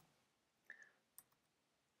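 Near silence: room tone with two faint clicks from a computer keyboard, the first under a second in and the second about half a second later.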